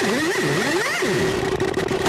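Hard techno (schranz) from a DJ mix: a synth line swoops up and down in pitch for about a second, then holds a steady tone.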